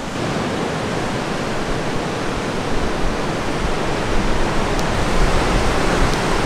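Ocean surf breaking at the foot of the sea cliffs, heard from above as a steady rushing noise, with a low rumble that grows stronger about two seconds in.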